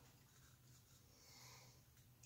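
Near silence: room tone with a faint steady low hum and soft, faint rustling, as of gloved hands handling a small paint cup.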